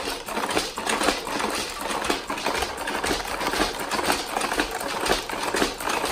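Plastic toys on a baby jumper's tray clattering and rattling rapidly and without a break as the baby shakes the toy bar and bounces in the seat.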